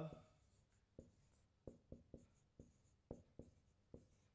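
Faint marker-on-whiteboard writing: about nine short, sharp taps and strokes at an irregular pace as a line of handwriting is put down.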